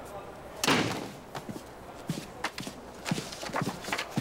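A door shut hard under a second in, followed by a series of footsteps on a hard floor.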